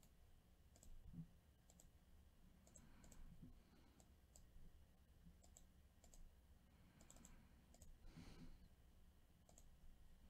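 Faint, irregular clicks of a computer mouse, about a dozen spread unevenly, over a low steady hum.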